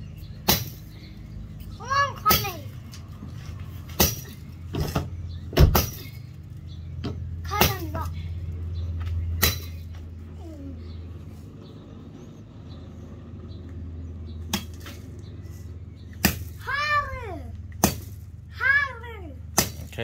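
A machete chopping into the thin trunk of a small tree: about ten sharp chops at irregular intervals, the loudest about five and a half seconds in, with a pause of several seconds in the middle. Short high-pitched cries from a child come between some of the strokes.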